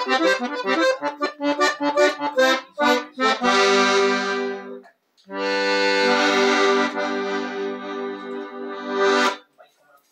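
Small 22-key, 8-bass piano accordion playing a chamamé: a quick run of melody notes over bass and chord accompaniment, then two long held chords. The second chord, the last of the tune, cuts off shortly before the end.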